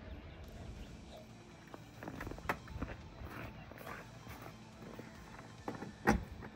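Footsteps in snow: a series of faint, irregular scuffs and crunches, with a sharper click about two and a half seconds in.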